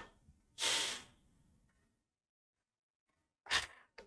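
A man's audible breath close to a clip-on microphone about half a second in, a short sigh-like rush of air, followed by near silence and a brief sound near the end as he is about to speak again.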